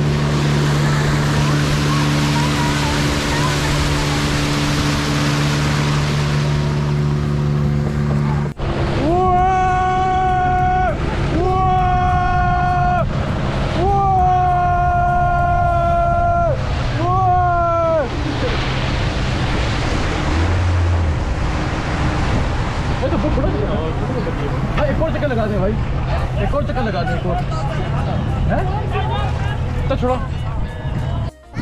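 Outboard motor of a small passenger boat running at a steady speed, with rushing water and wind noise. About eight seconds in, a sudden cut gives way to four long, held, sung-sounding phrases, then indistinct voices over a noisy background.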